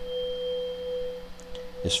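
A 512 Hz tuning fork, the C one octave above middle C, ringing after being struck: a single steady pure tone. A faint higher overtone dies away about a second in.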